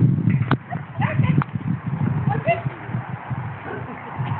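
A dog handler's brief distant calls during an agility run, over a steady run of low, irregular thumps and rumble.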